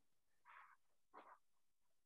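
Near silence: room tone, with two faint short sounds about half a second and a little over a second in.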